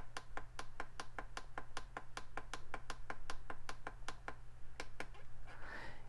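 Rapid, evenly spaced clicking of the FrSky Taranis Plus radio's plastic menu buttons, about six presses a second, stopping about five seconds in: stepping through the multiprotocol module's protocol list. A faint low hum sits under the clicks.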